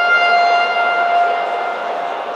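Timekeeper's round signal in a boxing ring: a single steady pitched tone with a stack of overtones that holds without wavering and cuts off near the end, over the murmur of the hall.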